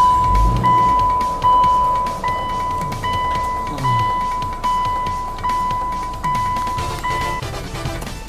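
An electronic beep at one steady pitch, sounding in repeated long pulses with short breaks about every 0.8 seconds, over music; the beeping stops shortly before the end.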